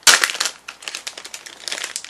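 Crinkly packaging being handled as a clear phone case is taken out. A loud burst of crinkling comes right at the start, then lighter crackles follow.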